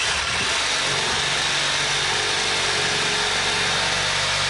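Handheld cordless power tool running steadily at full speed as it cuts into a freshly dug, dirt-covered sassafras root.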